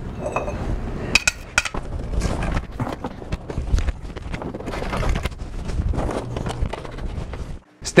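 Steel grow-tent frame poles clanking and rattling as they are handled and pushed together into their connectors: a string of sharp, irregular knocks.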